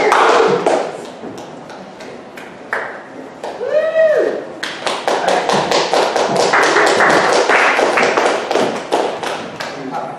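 Audience clapping, several sharp claps a second, led in by a single whooping call; the clapping fades away near the end.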